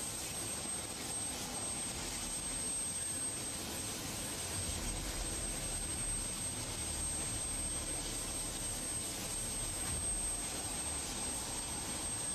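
Steady rushing noise of aircraft turbine engines running, with a thin, constant high whine over it.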